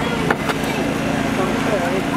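Hydraulic rescue-tool power unit running at a steady hum while firefighters cut a car door free, with two sharp metallic clicks in the first half second as the hinges are cut.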